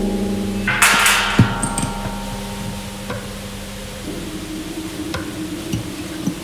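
Large steel cauldron ringing with several sustained metallic tones, struck again with a bright, scraping hit about a second in and a sharp knock just after, the ringing slowly fading. A low steady hum comes in at about four seconds, with scattered small clicks.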